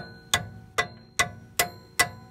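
Hammer striking a steel wrench fitted over the end of a Ford E350's radius arm, driving the new bushing washer on: about five evenly spaced metal-on-metal blows, roughly two and a half a second, each with a short ring.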